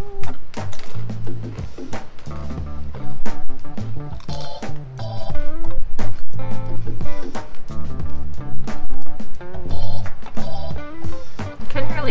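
Background music with a steady beat, a bass line changing notes about every half second, and a melody over it.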